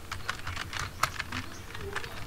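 Keys being typed on a laptop keyboard: a run of irregular clicks, with one sharper keystroke about a second in.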